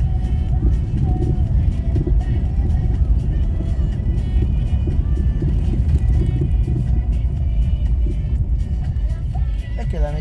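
Low road rumble inside a car driving slowly over cobblestones, with music playing under it.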